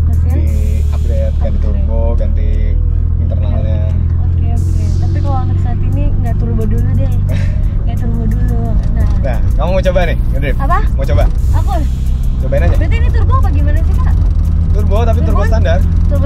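A Nissan Cefiro's engine idling with a steady low hum, heard inside the cabin, under talking and background music.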